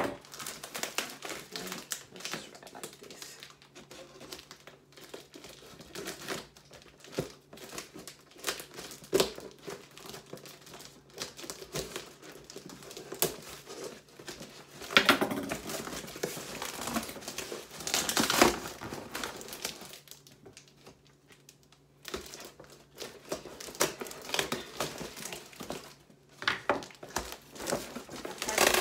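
Packing tape being peeled and ripped off a cardboard box by hand, with the box flaps rustling and crinkling: irregular crackly rustles, with two louder tearing rips a little past the middle and a short lull after them.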